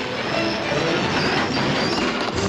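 A freight train braking to a stop, its steel wheels squealing on the rails: a cartoon sound effect.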